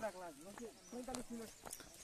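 Faint speech from people talking a little way off, with a couple of soft clicks.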